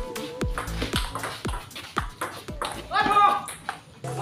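Table tennis ball clicking off paddles and table in a rally, over electronic background music with a kick drum about twice a second. A loud voice rings out about three seconds in.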